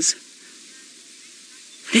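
Faint steady hiss of open-air background noise, with no distinct event in it. A woman's voice is cut off just at the start and begins again near the end.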